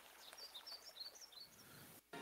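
Near silence, with a quick series of faint, high, short chirps like a small bird's calls in the first second and a half.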